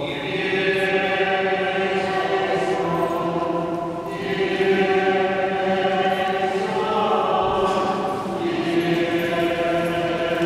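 Liturgical chant sung in long, held phrases in a reverberant church, with short breaks about four and eight seconds in.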